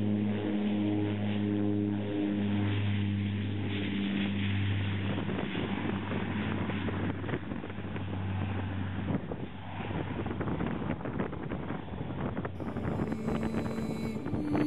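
Twin-engine propeller aircraft taking off: a steady engine-and-propeller drone with a low hum that fades about nine seconds in as the plane pulls away, leaving a rough rumble.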